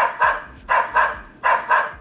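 Recorded dog barking played through the small speaker of an Oukitel WP17 smartphone by its built-in Voice Simulation sound generator. About five short, thin barks come in loose pairs.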